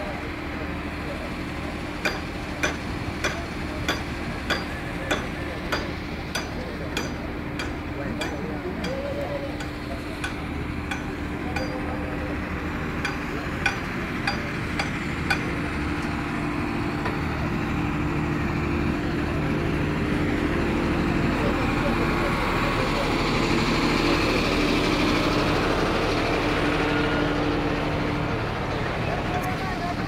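A vehicle engine running steadily under crowd voices. Over it comes a run of sharp knocks, about three every two seconds, for the first six seconds or so, then a few scattered ones up to about fifteen seconds in.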